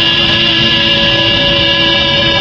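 Karaoke backing music holding one steady chord near the end of the song, with no singing, over the rumble of a car interior.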